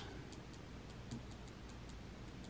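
Faint, evenly spaced light ticking, about three ticks a second, with a slightly sharper click at the very start.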